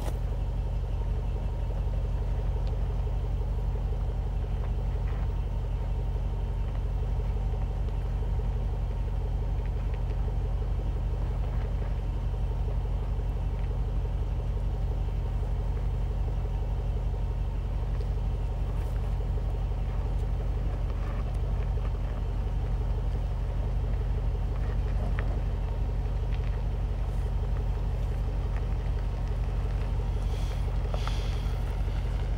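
A vehicle engine idling, a low, steady hum that holds the same pitch and level throughout.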